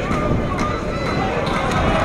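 Pitchside sound of a football match in open play: players calling and shouting to each other at a distance, over a steady low rumble.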